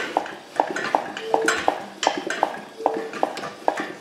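Land Rover 300Tdi diesel engine with no pistons fitted, turned over by hand at the crank: the fuel injection pump gives a quick, uneven series of knocks, about three a second, mixed with metallic rattle from the engine lifting frame. A short metallic ring sounds twice.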